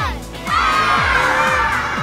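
A group of children shouting together in one long shout at the end of a countdown, starting about half a second in, over a children's song backing track with a steady drum beat.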